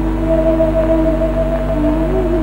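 Slow background score of long held, organ-like tones that drift and bend slowly in pitch, over a steady low hum.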